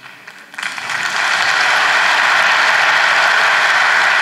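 Audience applauding, starting about half a second in, swelling quickly and then holding steady.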